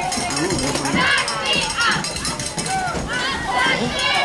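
Football crowd shouting and calling out from the sideline, many voices overlapping.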